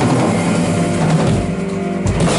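Live rock band with distorted electric guitars, bass guitar and drums playing loud, holding a long sustained chord that points to the end of a song.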